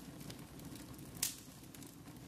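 Wood fire crackling in a fireplace: a low steady rush with scattered small pops and one louder snap just over a second in.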